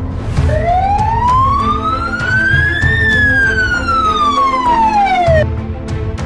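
Ambulance siren wailing: one slow rise in pitch over about two and a half seconds, then a fall back down that ends near the end, over background music.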